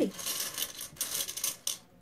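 Bertie Bott's jelly beans rattling and clattering in their box as someone picks one out: a quick, dense run of small clicks lasting about two seconds.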